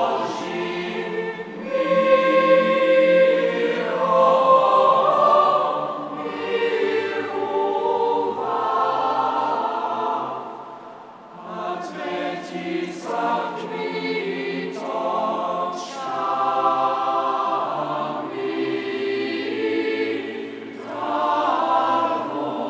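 Large youth choir singing in parts, phrase after phrase swelling and easing, with a brief quieter moment about eleven seconds in.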